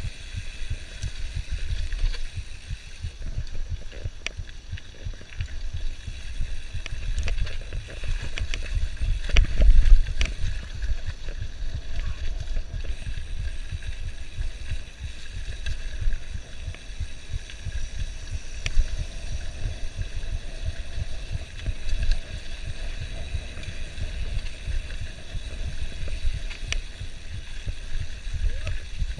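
Mountain bike descending fast on a rough dirt trail: wind buffeting the microphone with a constant low rumble, and the bike rattling and knocking over bumps, the heaviest jolt about ten seconds in.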